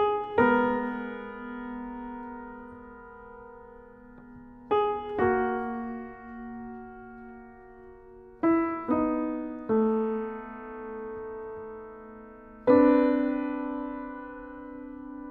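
Slow instrumental keyboard music: piano chords struck one after another, each left to ring out and fade, a new chord every one to four seconds.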